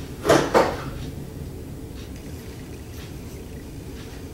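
A short soft sound about half a second in, then quiet room tone with a steady low hum.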